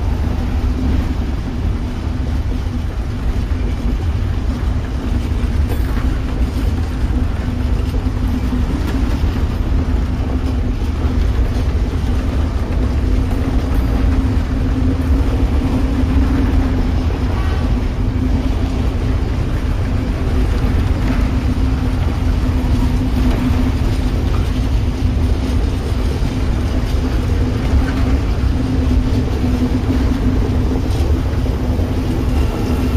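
A long freight train of covered box wagons rolling past: a steady low rumble of wheels on rail with a constant low drone and faint scattered clicks, unchanging throughout.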